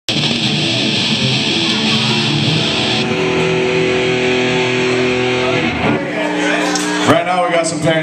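Distorted electric guitars holding a ringing chord as a live metal song ends, with a bright hiss over it that thins out about three seconds in; the chord stops about six seconds in, and a man starts talking into the microphone near the end.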